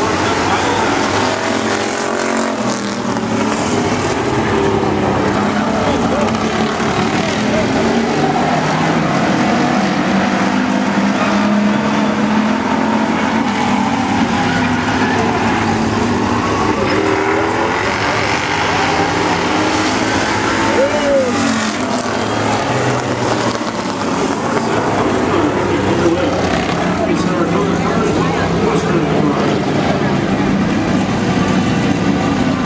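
Several Bomber-class stock car engines running and revving around a short oval track, their pitch rising and falling as they lap.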